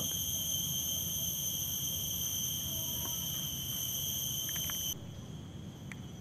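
Insects calling in a steady, high-pitched drone of several pitches at once. It drops off suddenly about five seconds in, leaving only a faint trace of the drone.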